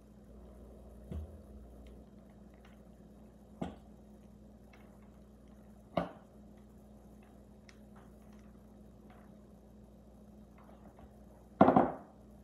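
Quiet kitchen handling: a few soft taps and clinks as crumble topping is sprinkled by hand from a small ceramic bowl onto foil tart tins, then a louder clatter near the end.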